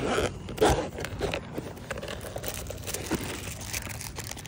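A hard case for shooting glasses being worked open and handled: rustling, scraping and crunching, loudest in the first second.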